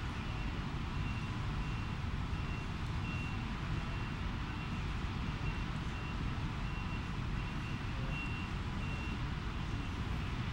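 A vehicle's back-up alarm beeping, about two high beeps a second, over a steady low rumble of engines. The beeping stops near the end.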